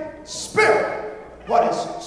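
A man's voice preaching through a microphone, in two short, loud, emphatic bursts about a second apart.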